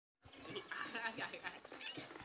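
Faint voices over low background noise, starting a moment in after a brief silence.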